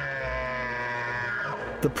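Bull elk bugling: a held, high whistling call that falls away about a second and a half in.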